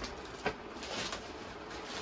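Faint handling noise: a brief crinkle of plastic garment wrapping about half a second in, then low, even room noise.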